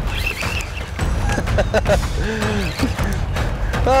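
Spinning reel winding and clicking as a hooked barracuda is fought on the line, over a steady rumble of wind on the microphone, with a few short voice sounds in the middle.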